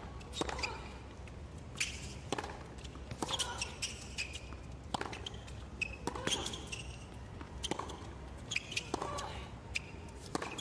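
Tennis rally on a hard court: a string of sharp racket-on-ball strikes and ball bounces, with short squeaks of shoes on the court surface between them.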